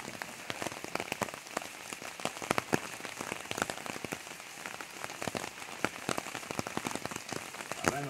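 Steady rain falling, with many separate drops tapping irregularly over the hiss.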